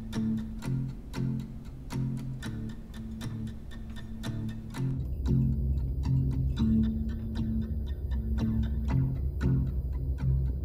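Acoustic guitar picked in a steady repeating pattern as the intro of a song, about two notes a second. About halfway through, a bass joins underneath.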